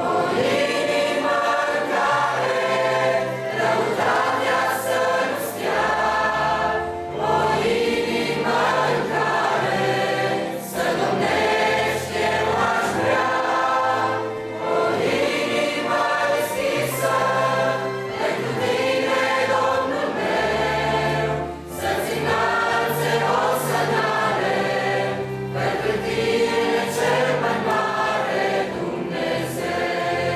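Mixed youth choir of male and female voices singing a hymn, with a steady low bass line underneath that changes note every few seconds.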